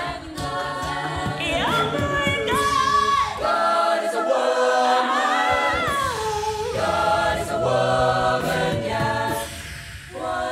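An a cappella group singing layered harmonies under a lead voice that runs up and falls back, with beatboxed vocal percussion beneath. The low bass and percussion drop out for a few seconds in the middle, then come back.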